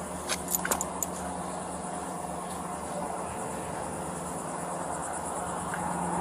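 Steady outdoor street background: a low hum under a thin, high-pitched steady buzz, with a few light clicks in the first second.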